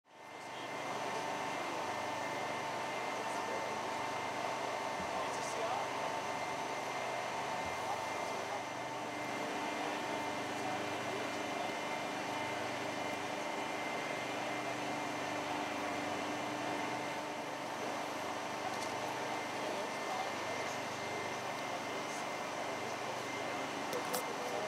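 A steady mechanical hum with a few constant tones, unchanging throughout, with faint indistinct voices.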